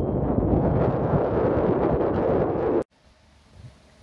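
Wind buffeting the camera microphone on an open, high observation deck: a loud, rough rumble. It cuts off abruptly just under three seconds in, leaving quiet indoor room tone.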